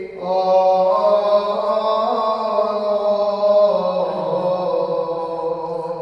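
Orthodox liturgical chant in the Byzantine style: a chanter sings long, slowly moving notes. There is a short break just as it begins, and the melody steps down in pitch about two-thirds of the way through.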